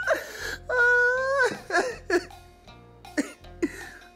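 A person still laughing hard after a laughing fit: a held cry about a second long that drops in pitch at its end, followed by short sharp gasping bursts.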